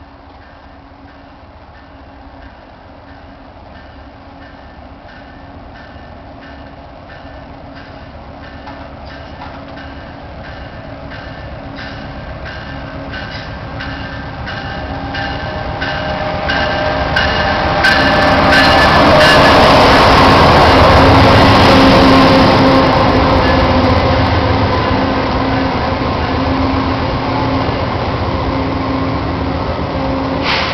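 VIA Rail passenger train arriving: its sound grows steadily louder as it approaches, peaks about two-thirds of the way in as the locomotive passes, then the passenger cars roll by with steady wheel-on-rail noise.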